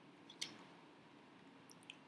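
Near silence broken by a few faint clicks of a stylus on a pen tablet while writing: one about half a second in and two close together near the end.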